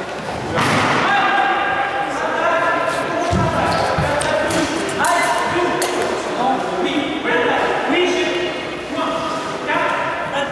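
Voices echoing in a large sports hall with some long held tones, and heavy thuds of footfalls on the wooden floor about three and four seconds in.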